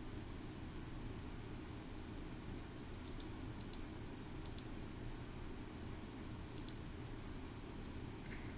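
Computer mouse clicking: about four short, sharp clicks spread over a few seconds, each a quick press-and-release pair, over a steady low hum of room tone.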